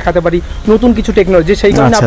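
A man's voice talking.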